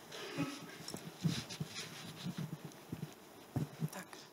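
Faint rustling of a seated audience with scattered soft bumps and knocks, in a quiet gap between speakers.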